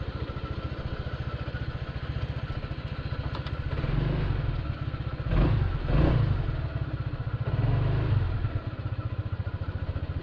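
2021 Honda ADV 150 scooter's single-cylinder four-stroke engine idling with a steady pulse, then revving up several times from about four seconds in as the scooter moves off and turns. It drops back to idle near the end.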